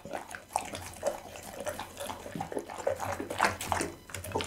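Pit bull eating raw meat close to a microphone: irregular wet chewing and mouth smacks, the loudest a little past three seconds in.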